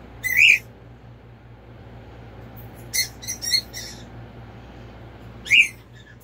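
Short, high-pitched chirping animal calls: one about half a second in, a quick run of four around three seconds in, and a last rising one near the end.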